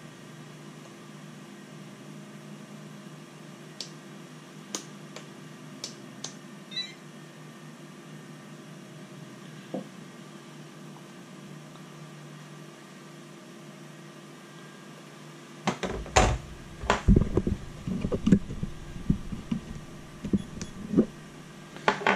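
A steady low room hum with a few faint clicks. About sixteen seconds in it gives way to a run of loud, irregular knocks and clunks from handling on a workbench.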